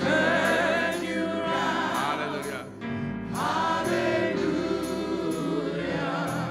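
A gospel choir singing a slow song in long held notes over steady instrumental accompaniment, with a short break between phrases about three seconds in.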